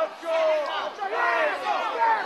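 Crowd yelling and shouting over one another, many voices at once, at a cage fight during a ground exchange.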